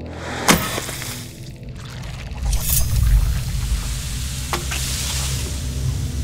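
Horror trailer sound design: a low rumbling drone with a sharp crack about half a second in, then a hissing swell in the middle.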